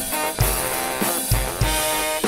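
Live band playing an instrumental passage: two saxophones sound held notes over a drum kit, with kick drum beats about half a second in and twice more later.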